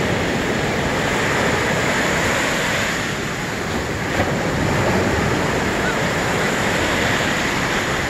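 Ocean surf breaking and washing through the shallows, a steady rushing noise, with wind on the microphone.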